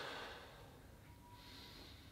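A person's faint breathing while holding a cobra stretch: one breath trailing off at the start and another beginning a little past halfway.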